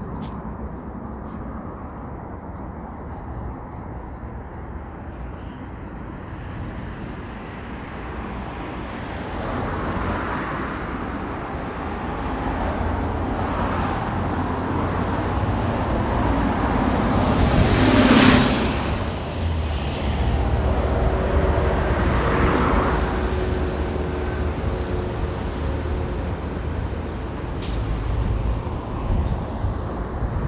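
Road traffic on a city bridge. A city bus passes close in the nearest lane, swelling to the loudest moment a little past halfway through and then fading, with other cars and trucks running steadily around it.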